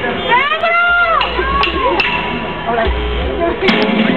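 Live rock stage just before a song starts: a long yell that rises and then falls in pitch, low bass notes, and a few sharp clicks.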